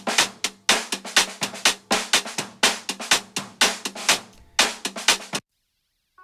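Playback of a lo-fi drum recording through its contact-mic and hi-hat-mic tracks together, contact mic panned left and hi-hat mic right, both heavily EQ'd and limited so they sound scratchy and unnatural. Fast drum strokes come several times a second, then stop suddenly near the end.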